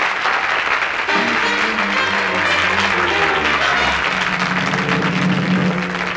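Audience applauding over the instrumental introduction of a song, with the music coming in about a second in and building under the clapping.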